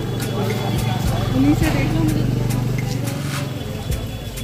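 Busy market street: voices of passers-by over the steady low hum of a motor vehicle's engine running nearby, with a few short knocks and clicks.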